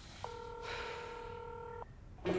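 Telephone ringback tone: a single steady ring of about a second and a half, starting and stopping abruptly, as the outgoing call rings at the other end.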